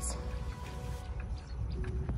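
Soft background music with a few held notes that change near the end, over a steady low rumble of wind on the microphone.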